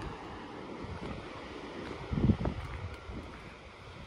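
Steady wind noise on the microphone over the wash of distant sea surf, with one short low thump about two seconds in.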